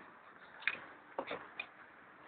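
A few faint, irregular clicks and knocks from a child's bike being moved about by hand.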